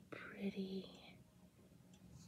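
A brief soft, whispered vocal sound in the first second, then faint room tone with a low steady hum.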